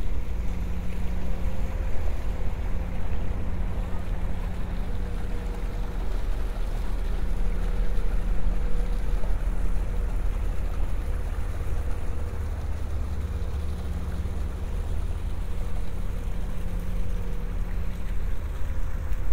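A moored sightseeing water bus's engine idling with a steady low hum. Water splashes from a discharge outlet in its hull into the canal.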